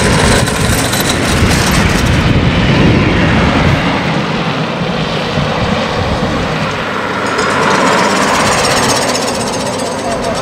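Soapbox carts rolling fast down an asphalt road, their hard wheels and bodywork rattling loudly as they pass close for the first few seconds. Near the end the sound swells again as a motorcycle comes down the road.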